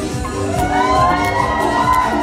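Music with a steady beat, with a crowd of fans cheering and shouting that swells about half a second in.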